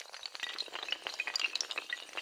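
Sound effect of a long chain of dominoes toppling: a rapid, dense clatter of light clicks with bright, ringing ticks.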